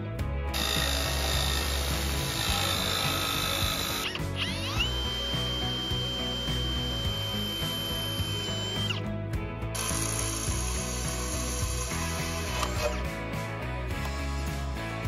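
A cordless drill boring through a thin stainless steel water bottle base, over background music. About four and a half seconds in, its whine rises and then holds one steady pitch for about four seconds before dropping away, with stretches of harsher noise before and after.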